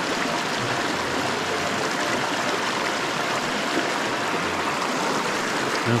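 A small rocky creek running over stones and a low cascade: a steady rush of water.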